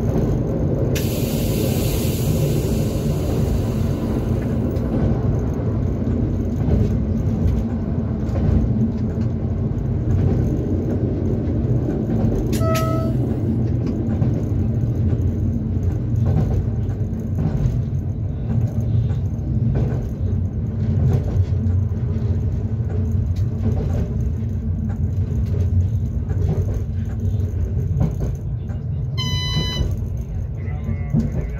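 Tatra electric railway unit class 425.95 running along the track, heard from inside its cab as a steady low rumble of wheels and running gear. Air hisses for a few seconds near the start, and two short beeping tones sound, one about halfway and one near the end.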